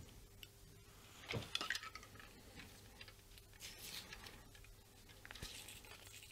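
Faint handling noises of hands working on a guitar neck with a glue tube and tape: a few light clicks and taps, one cluster about a second and a half in and another near four seconds.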